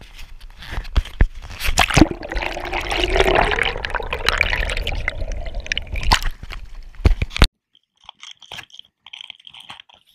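Lake water gurgling and sloshing against a small action camera as it goes under the surface, with a few sharp knocks on the housing. The sound cuts off suddenly about three-quarters of the way in.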